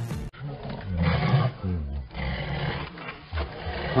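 Tiger roaring and growling in loud, low calls, the longest about a second in and again from two to three seconds, with shorter ones between. The last of a piece of music cuts off just before.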